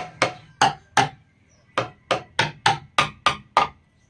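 Bamboo slit drum struck with bamboo sticks: about a dozen sharp wooden knocks, each with a brief pitched ring. Four strikes, a short pause, then a quicker, even run of eight.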